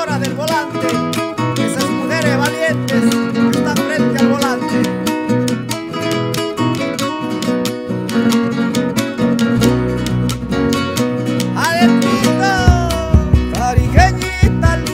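Instrumental Tarija cueca music led by quick plucked acoustic guitar lines. Deep low notes come in near ten seconds, with a heavier low beat near the end.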